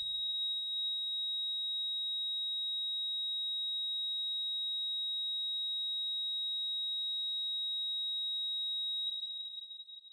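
Heart monitor sounding one continuous high-pitched tone, the flatline alarm. The tone fades out about nine seconds in.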